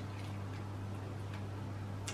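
Quiet kitchen background: a steady low hum with a few faint, irregular clicks.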